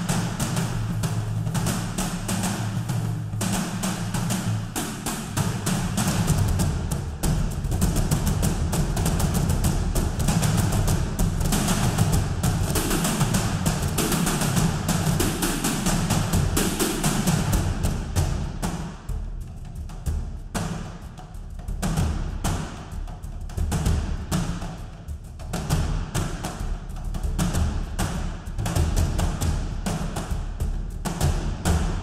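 Sampled frame drum ensemble played from a keyboard in a fast, continuous rhythm: deep, ringing low hits with many lighter strokes over them.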